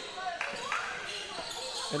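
Basketball bouncing on a hardwood gym floor, a couple of sharp thuds about half a second in, over faint indistinct voices in the hall.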